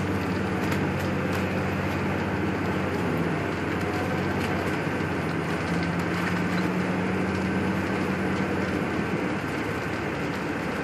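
Car driving along, heard from inside the cabin: steady road noise under a low, even engine drone.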